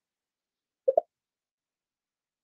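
Dead silence on a video call's audio, broken about a second in by one brief, muffled double blip.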